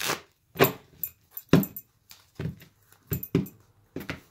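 A deck of tarot cards being shuffled by hand: a string of irregular short slaps and riffles, about seven in four seconds.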